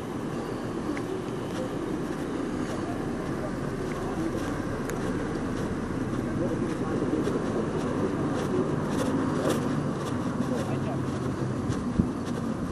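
Steady road and engine noise of a car driving slowly, heard from inside the vehicle, with indistinct voices under it. It grows a little louder in the second half.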